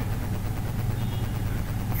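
Steady low background hum, with no other sound.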